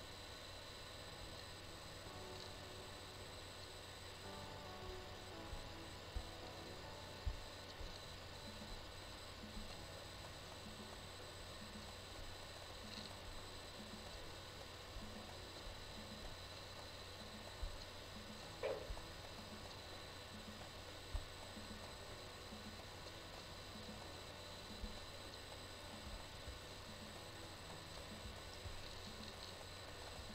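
Faint room tone: a steady hiss with a low electrical hum, broken by a few faint knocks and one brief squeak about two-thirds of the way through.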